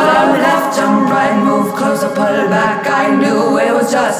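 Music: a woman's voice singing in layered, choir-like harmonies, with little or no instrumental backing.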